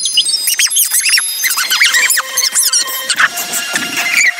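Cartoon soundtrack played at four times speed: the characters' voices pushed up into rapid, high-pitched squeaky chatter, with a few steady high tones behind.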